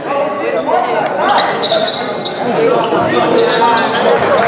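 A basketball being dribbled on a hardwood gym floor, with voices in the hall and a cluster of short high squeaks about a second and a half in.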